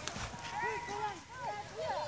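Faint voices of people talking in the background, with one sharp knock right at the start.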